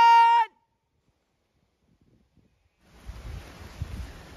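A woman's long, steady-pitched call to the sheep ends about half a second in. Near silence follows, then from about three seconds comes rushing, rustling noise with dull low thumps.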